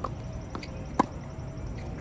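Tennis racket striking the ball on a serve: one sharp pop about halfway through, with a couple of fainter ticks before it.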